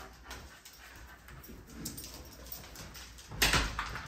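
A pet dog whimpering softly, with a brief thump near the end.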